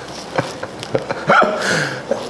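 Men's laughter in short, breathy bursts.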